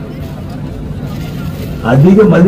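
A steady low rumble of background noise in a pause between a man's amplified speech, with his voice coming back in near the end.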